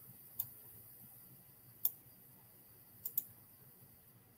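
A few small, sharp clicks over quiet room tone: one under half a second in, one near the middle, and a quick pair about three seconds in.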